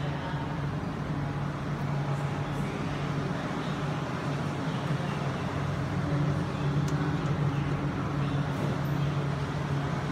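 Steady urban background rumble of traffic and ambient noise with a low hum, with a light click about seven seconds in as the lift call button is pressed.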